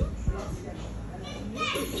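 A person's high-pitched voice speaking near the end, after a couple of soft low bumps early in the clip.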